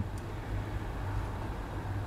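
Maxxair 5100K roof vent fan running steadily on a reduced 12 volts, an even hiss of moving air over a constant low hum.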